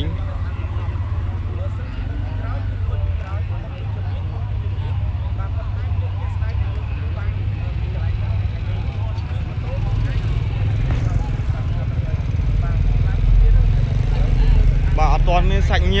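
Steady low rumble of street noise under faint, indistinct voices of onlookers.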